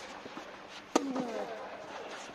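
A tennis ball struck by the near player's racket about a second in: one sharp pop, followed by a falling, ringing echo in the hall.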